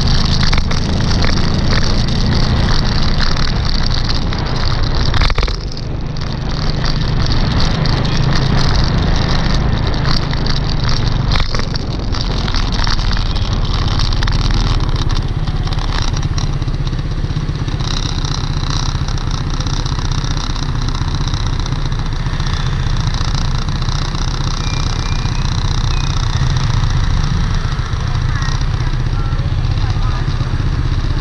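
City street traffic heard from a bicycle, mostly motor scooter engines, with low wind rumble on the microphone while riding. The sound steadies in the second half as the bike waits among idling scooters, and a thin high tone is heard around the middle.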